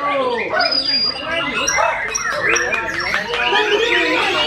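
White-rumped shama (murai batu) singing: a run of short, sharp whistled notes, some repeated in quick succession, over the chatter of a crowd of people.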